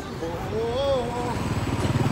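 A motor vehicle's engine running with a low, even pulse that grows louder in the second half, under faint voices.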